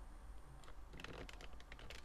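Faint typing on a computer keyboard: a rapid, irregular run of key taps that starts a little under a second in.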